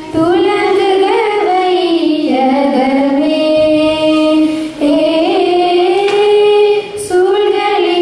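Young girls singing a song into microphones, the melody broken by short pauses between phrases about five and seven seconds in.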